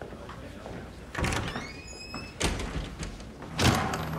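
A heavy door being pushed open and swinging shut: three knocks and clunks, with a short high squeak after the first, and the loudest knock near the end.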